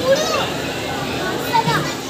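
Children's high-pitched voices calling out briefly, once just after the start and again near the end, over steady background chatter of people.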